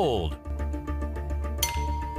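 Online auction site's alert sounds over a steady bed of background music: a falling pitched sweep as the lot closes as sold, then, about 1.6 s in, a chime with a held ringing tone as the next lot comes on the block.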